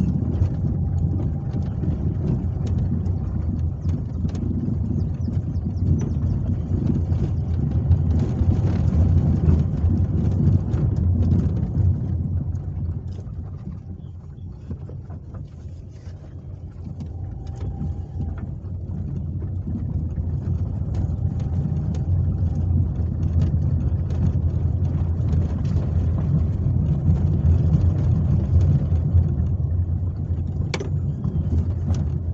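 Inside a car's cabin on a rough dirt road: a steady low rumble of engine and tyres with small rattles and knocks. It eases off about halfway through and builds up again.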